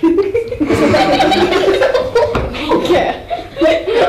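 A group of children laughing and giggling together, starting suddenly.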